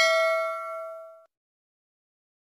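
A bell "ding" sound effect for the notification bell, ringing on at a few clear pitches and fading. It cuts off about a second and a quarter in.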